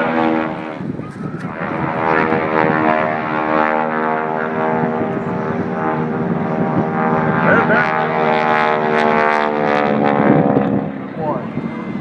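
Aircraft engine droning steadily overhead during an aerobatic display, one even, unbroken tone that holds for about ten seconds.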